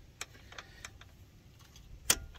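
A few faint metallic clicks as a small wrench turns the threaded adjuster nut on a drum brake's parking-brake cable, tightening it to take up play in the cable.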